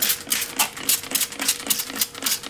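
Hand trigger spray bottle misting water over freshly baked, still-hot baguettes in quick repeated pumps, about five a second, each a short spritzing hiss.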